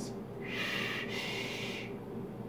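A long draw on a squonk-mod vape with dual coils: air hissing steadily through the atomizer for about a second and a half.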